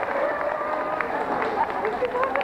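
Murmur of many voices from an audience in a large hall, one voice rising and falling above the rest, with scattered light clicks and taps throughout.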